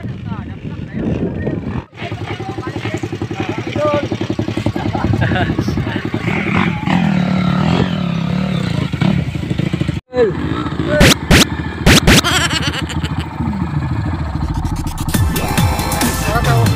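Small off-road motorcycle engine revving hard and labouring up a steep dirt hill climb, its pitch rising and falling with the throttle, with people's voices over it. The sound breaks off abruptly twice, and a few sharp knocks come about two-thirds of the way through.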